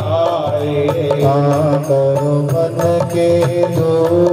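Devotional song: a voice singing a slowly gliding melody over a steady low drone, with light percussion strokes.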